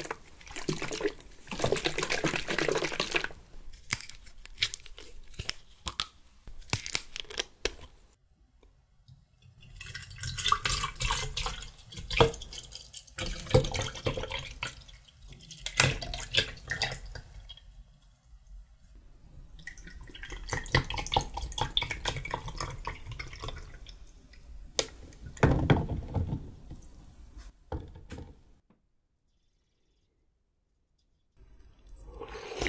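Mango juice poured from plastic bottles into a tall glass mug over large ice balls, in two long pours, one about ten seconds in and the other about twenty seconds in. Before the pours, plastic screw caps click as they are twisted open.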